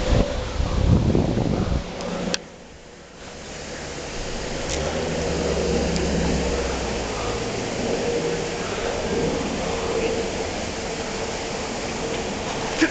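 Outdoor ambience with wind rumbling on the microphone for about the first two seconds, then a single sharp click, then steady wind and hiss with faint distant voices.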